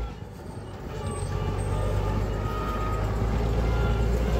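IMT 5136 turbo tractor's diesel engine running with a steady low drone as the tractor drives along. It is quieter at first and grows louder about a second in, then holds steady.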